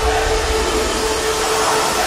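Film trailer sound design: a steady, loud rushing noise with one held note running under it.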